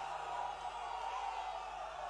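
Large audience in a packed hall cheering, a steady mass of many voices with no single speaker.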